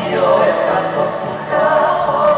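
A group of voices singing a song over music with a steady beat, the accompaniment for a Tongan dance.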